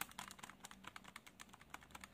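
Faint, quick clicks of buttons being pressed on a Casio scientific calculator, several a second, as a column of percentages is keyed in and added up.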